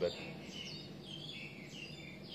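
Birds chirping in the background: a string of short, high chirps.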